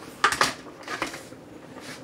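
A few short metal clinks and knocks of stainless steel cookware being handled, a pot lid and utensil against the pot, loudest about a quarter second in.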